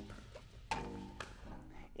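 Faint pickleball rally: a sharp paddle-on-ball pop about three quarters of a second in, then a softer one about half a second later.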